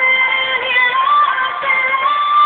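A woman singing long, high held notes of a power ballad, the pitch stepping up about halfway through.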